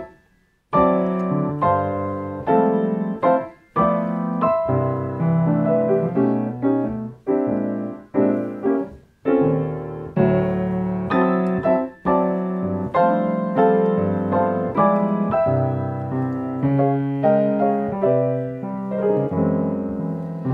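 Grand piano played in block-chord style: low left-hand chords on the strong beats and full chords under the right-hand melody, held with the sustain pedal. After a brief pause at the start, chords are struck about once a second, with a few short breaks.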